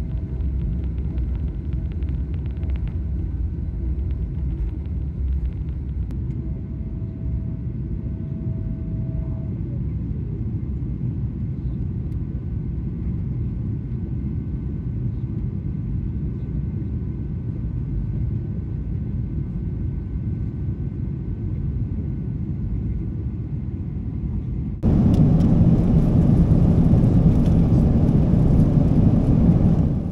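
Boeing 777-300ER engines heard from inside the economy cabin as the jet climbs out after takeoff: a steady low rumble, with a faint whine that drops in pitch and fades about ten seconds in. About five seconds from the end a louder, hissier rush of noise cuts in abruptly.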